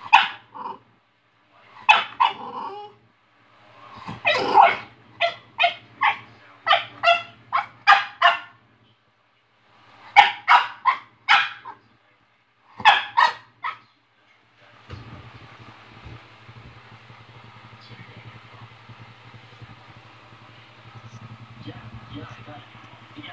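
French bulldog barking in bursts of short, sharp barks for roughly the first fourteen seconds, then only a faint steady hiss.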